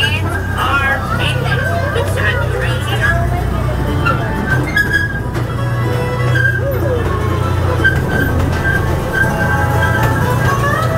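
Steady low rumble of an open-carriage amusement-park train running, with music and indistinct voices over it.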